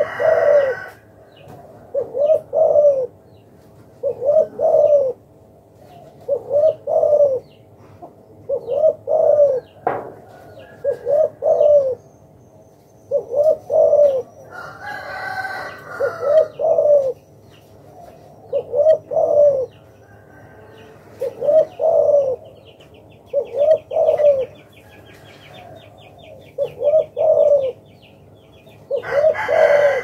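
Spotted dove cooing over and over, a phrase of two or three low notes about every two seconds.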